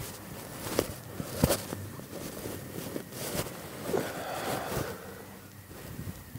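Outdoor background noise broken by a few sharp clicks and knocks, the strongest about a second and a half in.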